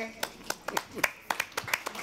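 Scattered hand claps from a small audience welcoming a performer, sparse and irregular rather than a full ovation.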